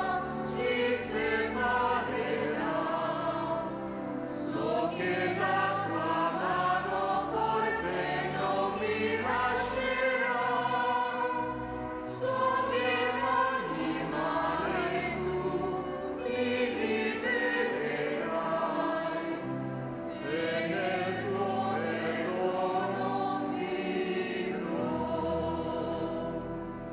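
Church choir singing a hymn, several voices together in slow phrases over sustained low notes, at the communion of a Catholic Mass.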